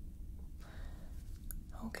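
Steady low rumble of a starship engine-hum ambience (the Enterprise-D's engine). Partway through there is a soft breathy hiss and a small click, and a whispered word begins near the end.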